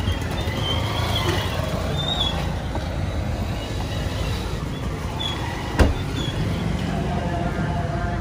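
Steady rumble of road traffic and vehicle engines, with a single sharp thump about six seconds in.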